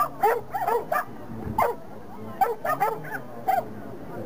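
A small dog barking about a dozen times: short, high barks in quick runs.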